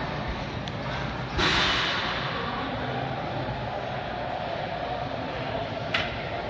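Gym background noise: a steady low rumble with faint distant talk, and a sudden rustling hiss about a second and a half in that fades within half a second.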